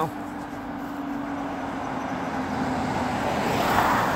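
ADL Enviro 200 single-deck bus approaching and passing close by. A steady engine hum is joined by rising engine and tyre noise, loudest just before the end as the bus goes past.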